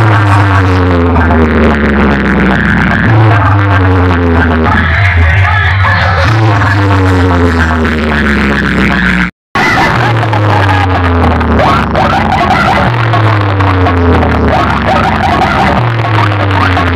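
Loud DJ dance music played through a large stacked competition speaker box system, with heavy bass and a sliding, falling phrase that repeats about every three seconds. The sound drops out completely for a split second about nine seconds in.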